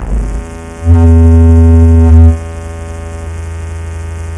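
SEELE Abacus software synthesizer playing its 'Dysfunctional Bass' preset: a low sustained bass note. It swells loud about a second in, holds for about a second and a half, then drops back to a quieter steady drone.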